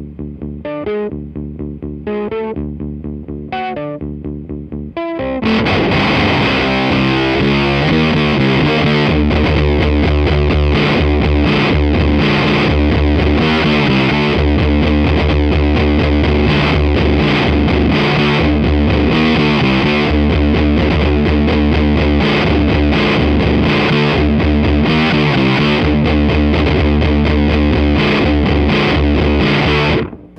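Stratocaster-style electric guitar tuned down to D standard, played through an octave fuzz pedal and repeating a riff. It starts as separate picked notes with the guitar's volume rolled low. About five seconds in it jumps to a much louder, denser fuzz as the guitar is turned up.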